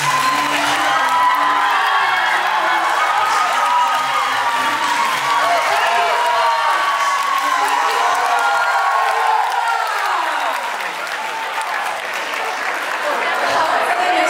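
Large audience applauding, with shouts and cheers from the crowd mixed in. Music plays underneath and fades out about ten seconds in.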